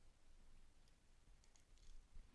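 Near silence: faint room tone, with a few faint clicks in the last half second.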